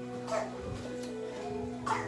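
Soft background keyboard music with sustained chords, plus two brief faint sounds, about a third of a second in and near the end.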